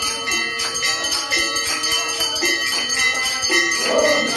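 Devotional bhajan music with small bells and cymbals ringing continuously over it. Under the ringing, held tones change pitch every second or so.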